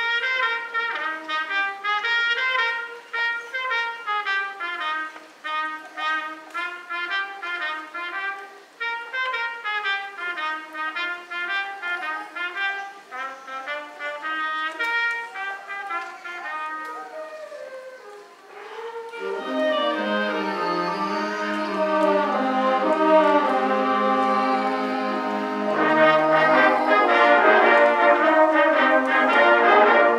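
Concert band playing: a lighter passage of quick, detached melody notes, then about two-thirds of the way in the full band enters louder, with low brass filling out the bottom, and swells again near the end.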